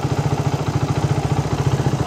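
Suzuki Raider 150 motorcycle's single-cylinder engine idling steadily, at about a dozen even firing pulses a second.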